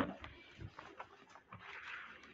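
Faint rustling of Bible pages being turned, with a few soft clicks and a short soft rustle near the end.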